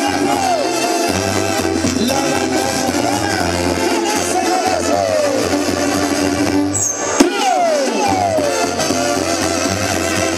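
Mexican banda (brass band) playing live: tuba bass line under trumpets, trombones and clarinet, with timbales and congas. The bass drops out briefly about seven seconds in, and a single sharp crack there is the loudest moment.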